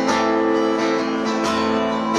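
Acoustic guitar strumming chords with no singing: two strums about a second and a half apart, each left to ring.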